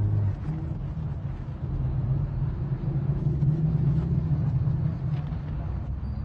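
Car engine running with a steady low rumble, heard from inside the cabin.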